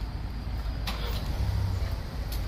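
Low rumble of road traffic, with a faint tap a little under a second in.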